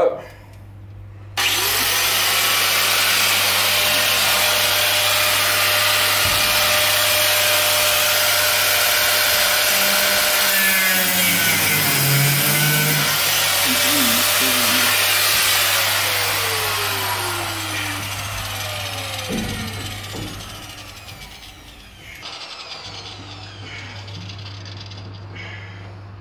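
Angle grinder spinning up about a second and a half in, then grinding at full speed with a harsh, even noise for some fifteen seconds before winding down, its pitch falling away over several seconds. A low steady hum runs underneath, and a brief sharp sound comes right at the start.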